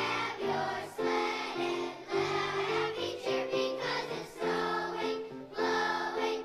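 A choir of second-grade children singing a song together, moving through a string of held notes.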